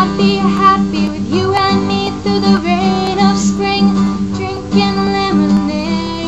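A woman singing a country-folk song to strummed acoustic guitar.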